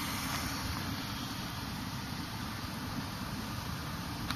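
Steady low rumbling noise on the camera microphone, with an even hiss over it and no distinct events.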